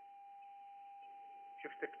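A faint, steady high tone over a low hiss on a telephone line, with the narrow, muffled sound of a phone call. A voice on the line comes in near the end. The presenter puts the trouble with the connection down to a technical or network fault.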